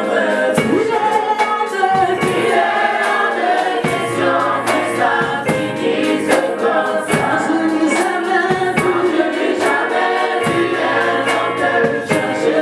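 Gospel worship group singing together in chorus, accompanied by keyboard and a drum kit keeping a steady beat.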